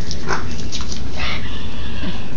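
A dog making a few faint, short vocal sounds over steady low background noise.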